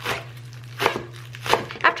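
Green onions being chopped with a knife on a wooden cutting board: a few separate cuts, each a short crisp knock of the blade through the stalks onto the board.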